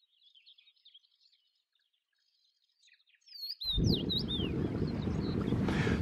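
Faint bird chirping, then about three and a half seconds in, wind rumbling on the microphone with several clear, downward-sliding bird whistles over it.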